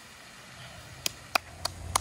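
A run of five sharp clicks about a third of a second apart, starting about a second in, over a faint steady background.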